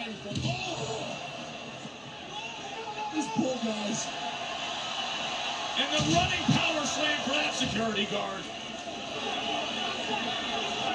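Wrestling broadcast playing on a TV: a commentator talking faintly, in a few phrases, over a steady background haze of arena noise.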